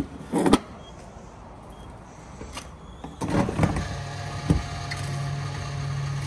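Diesel fuel dispenser: clunks as the nozzle is handled, then about three seconds in the pump motor starts and hums steadily while fuel is dispensed.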